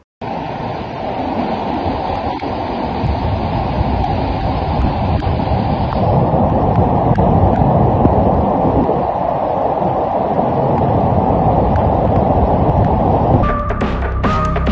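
Muddy floodwater rushing in a torrent through a street, a dense, steady rush that grows a little louder over the first few seconds. Just before the end, music with held tones comes in.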